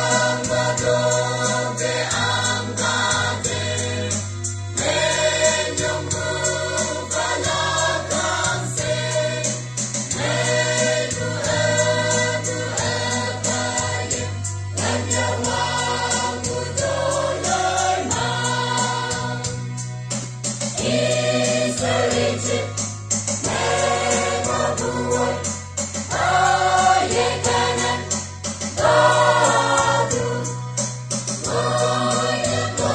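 Church choir singing a gospel song, with held low bass notes underneath that change every few seconds.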